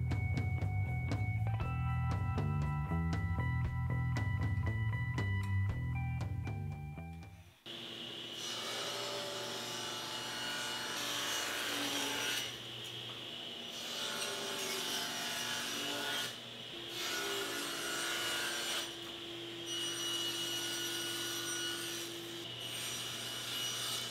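Background music for the first several seconds, then a table saw running and cutting thin cherry boards, squaring their edges and cutting them to length. The cutting noise breaks off and starts again several times as each cut ends and the next begins.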